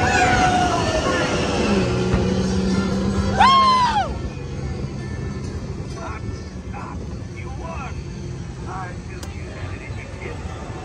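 Radiator Springs Racers ride car running fast along its track, with a steady rumble and music from the ride. About three and a half seconds in comes a short, high sound that rises and falls. After that the sound drops to a quieter rumble.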